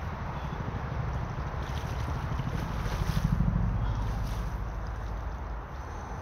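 Wind buffeting the microphone in a fluttering low rumble, strongest about three seconds in, over the steady rush of a shallow river flowing over stones.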